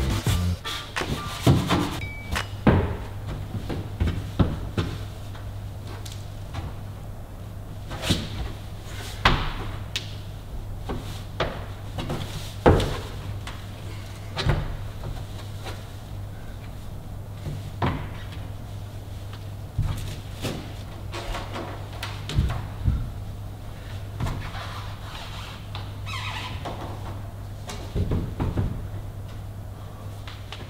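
Background music under irregular knocks and thuds of a climber's hands and rubber-soled shoes striking the plastic holds and panels of an indoor bouldering wall.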